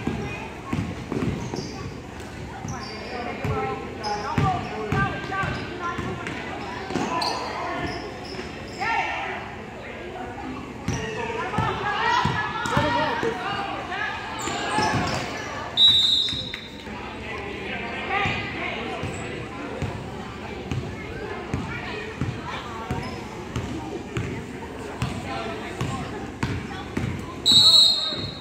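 Youth basketball game in a gym: a basketball being dribbled and bounced on the court amid spectators' voices and shouts that echo in the hall. A referee's whistle blows briefly about halfway through and again, louder, near the end.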